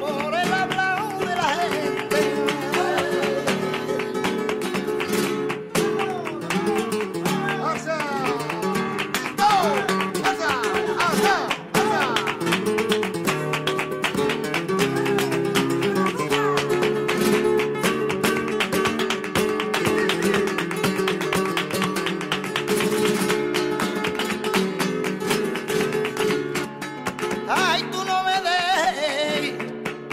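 Flamenco guitar playing an instrumental passage of strummed chords and picked runs, with the singer's voice coming back in at the very end.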